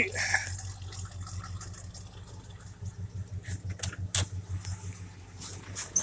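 A 1965 Pontiac's engine idling, a steady low pulsing from the exhaust, with a few sharp clicks in the second half.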